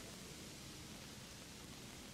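Faint, steady hiss of rain falling, with no distinct events.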